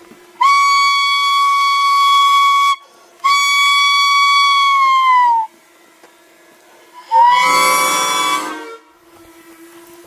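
A whistle blown in three long, loud blasts. The second falls in pitch as it ends; the third swoops up at its start and is rougher. Under them runs the steady faint hum of a drone.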